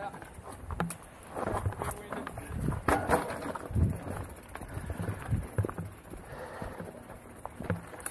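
Mountain bike rolling down a dry dirt trail: tyres crunching over the ground with irregular rattles and knocks from the bike over bumps.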